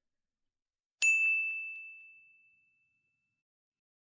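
A single bell-like ding, like a notification chime: one bright ringing tone struck about a second in that fades away over about two seconds.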